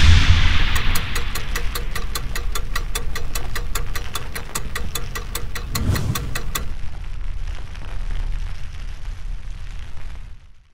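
Sound effects for an animated title sequence: a deep boom at the start, then a steady rushing hiss with a fast, even ticking of about five ticks a second that stops a little after six seconds. A second low swell comes near six seconds, and the hiss runs on until it fades out at the end.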